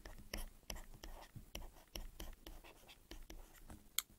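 Faint stylus scratching and tapping on a drawing tablet while handwriting, in short, irregular strokes.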